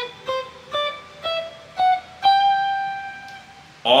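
ESP Strat-style electric guitar played one note at a time, climbing step by step up the G major scale. The top note rings for about a second and a half while it fades.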